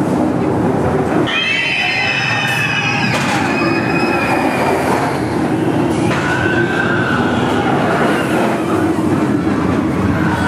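Steel roller coaster train of the SheiKra B&M dive coaster running fast along its track after the vertical drop, a loud steady rushing roar. High wavering cries of riders screaming rise over it about a second in and again later.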